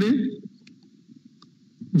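A man's speech ends in the first half-second, followed by a pause of faint low hum broken by a few small clicks. Speech resumes just before the end.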